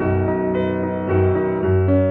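Background piano music: slow, sustained notes over deeper bass notes.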